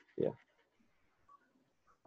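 A man's brief spoken "yeah", then near silence.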